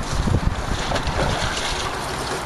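Wind buffeting the microphone in low gusts, strongest in the first half second, over a steady rushing hiss.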